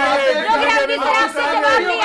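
Several people talking over one another in loud, overlapping crosstalk during a heated argument, with no single voice clear.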